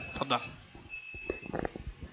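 Faint clicks and knocks from a headset microphone being handled, with a thin high electronic tone that comes in about a second in and lasts about half a second.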